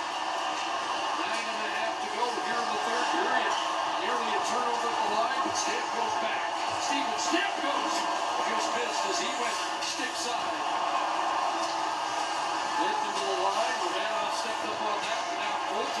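Ice hockey broadcast playing through a television speaker: steady arena crowd noise with overlapping voices, and scattered sharp clicks from sticks, puck and skates on the ice.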